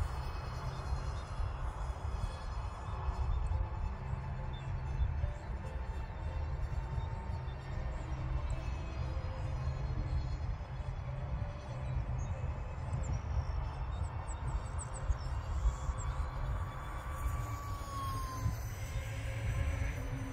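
Wind buffeting the microphone in a steady low rumble, over the faint, thin high whine of the E-flite UMX A-10's twin electric ducted fans flying far overhead, its pitch shifting slightly as the jet moves.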